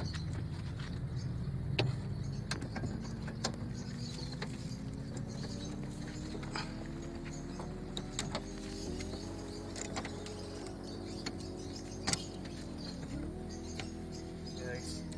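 Scattered light clicks and taps from hands working a van door and its handle, over an engine running nearby whose pitch slowly rises, dips once near the end, then climbs again.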